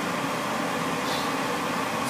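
Steady noise of a commercial gas wok stove running under a wok of heating oil, with a faint hum in it. The oil is not yet frying.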